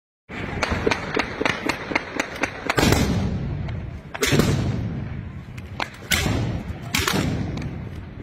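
Gunfire: a quick string of single shots, about four a second, then several much louder heavy shots, each followed by a long rumbling echo, a second or two apart.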